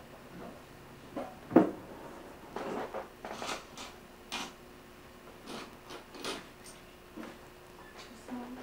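Scattered small knocks and rustles in a room, a few each second or so, the loudest about one and a half seconds in, with a faint steady hum in the second half.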